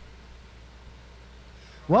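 Quiet room tone with a low, steady hum, then a man's voice starts speaking near the end.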